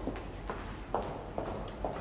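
Quiet handling at a kitchen worktop: four or five soft knocks about half a second apart, over a low steady hum.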